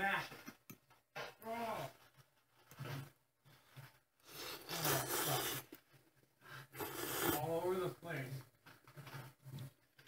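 Ramen noodles being slurped and eaten from a bowl in several separate noisy bursts, each lasting up to a second or so, with quieter gaps between them.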